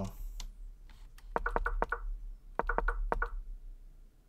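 Two quick runs of sharp clicks, a handful in each, about a second and a half in and again near three seconds. This is a chess game being stepped through move by move on a computer.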